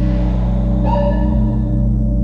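Music made entirely with the human mouth: a steady low vocal drone, with a ringing, gong-like tone of several pitches sounding about a second in and dying away after about a second.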